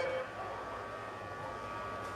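Steady, faint background hum and hiss with a few thin, unchanging tones and no distinct event: the ambient noise of the race-call feed between the caller's words.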